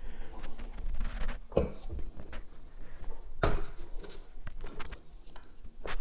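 Clicks and knocks from handling a Worx mini circular saw while its cutting depth is adjusted and the saw is brought down onto the wooden floorboards. There are a few separate knocks, the loudest about halfway through, with the saw not running.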